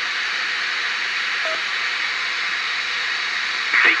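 Steady hiss from an AM car radio's speaker, fed by a homebrew 2 metre converter and tuned to an FM repeater, between transmissions with no voice on the channel. A faint short tone comes about a second and a half in.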